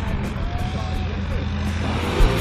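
Propeller aircraft engine running, a steady low drone, with a faint voice over it.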